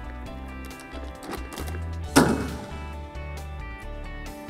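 Background music, with a single sharp thump about two seconds in as the Airzooka air cannon fires: its elastic band snaps the plastic film at the back forward, pushing out a burst of air.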